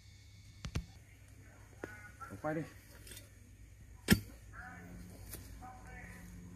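A few sharp knocks, the loudest about four seconds in: a metal spade blade being driven and levered into hard, lumpy soil around a small tree's roots.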